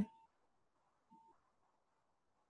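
Near silence, with one faint short beep about a second in.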